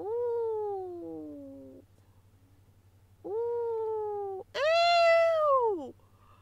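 A cat meowing three times in long, drawn-out meows: the first sliding down in pitch, the second level, the third the loudest, rising and then falling.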